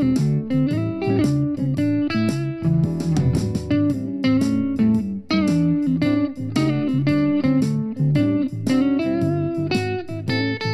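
Electric guitar playing a 12-bar blues: quick single-note lines and double stops, each note sharply picked, over a repeating low-note pattern.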